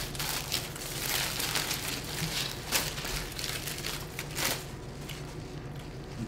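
Paper and foil fast-food wrappers crinkling in a string of short, faint rustles as a sandwich and its packets are unwrapped and handled.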